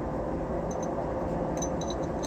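Light metallic clinks of steel drill bits being handled and fitted into the vent holes of an aluminium motor end plate, a few small clicks from under a second in, over a steady room hum.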